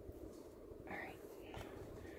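Faint, softly murmured voice: a quiet word or two about a second in, over low steady room noise.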